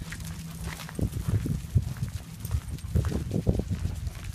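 Footsteps on a gravel path: a run of dull, uneven thuds a few times a second as the walker moves briskly along.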